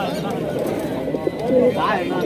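Caged domestic pigeons cooing over a steady background of many people talking.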